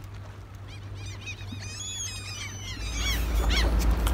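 Birds calling in a quick series of short, arching calls, over a steady low rumble that grows louder near the end.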